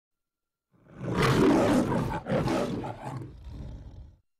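The Metro-Goldwyn-Mayer logo lion roar: a lion roaring twice, starting about a second in, the second roar fading into a weaker tail near the end.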